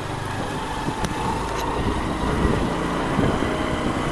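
Motor scooter riding along at low speed: its small engine running steadily under a low rumble of road and wind noise.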